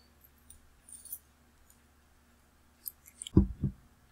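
A few faint computer-mouse clicks, about a second in and again around three seconds in.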